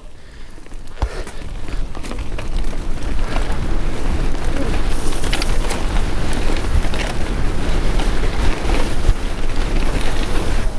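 Wind noise on the camera's microphone with the rumble of a Devinci Wilson downhill mountain bike's knobby tyres rolling fast over a dirt trail, building over the first few seconds as the bike gathers speed. A few sharp clicks and rattles from the bike over bumps.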